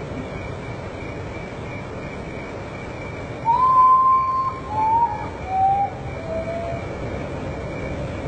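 Common potoo singing: one long whistle followed by three shorter ones, each lower in pitch than the last, starting about three and a half seconds in.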